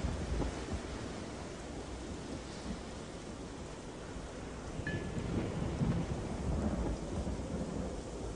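Thunderstorm: steady rain with low rolling thunder rumbles that swell in the second half. A brief thin high tone sounds about five seconds in.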